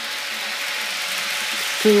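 Toy train set with two locomotives running around its track: a steady, even running noise from the motors and wheels.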